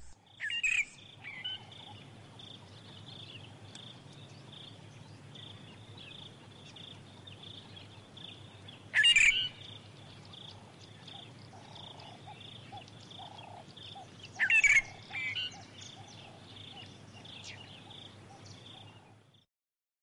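Birds calling: three loud calls, about a second in, around nine seconds and near fifteen seconds, over a steady, rapidly pulsing high chirping with fainter, lower calls in between. The sound cuts off about a second before the end.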